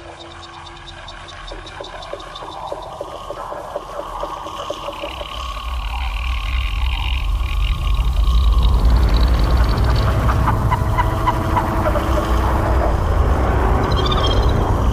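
Electronic dance music from a DJ mix building up, getting steadily louder, with a deep rumbling bass coming in about six seconds in and reaching full level around eight seconds.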